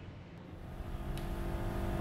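Low background rumble, with background music fading in from about half a second in and growing steadily louder.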